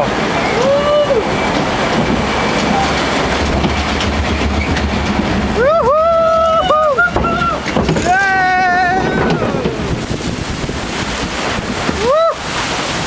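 Log flume boat ride with a steady rush of wind and water on the microphone. Riders let out high, drawn-out whoops twice about six and eight seconds in, as the boat goes down the drop into the water channel.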